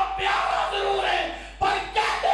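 A man's voice shouting forcefully into microphones in an impassioned, declaiming speech, with short breaks between loud phrases.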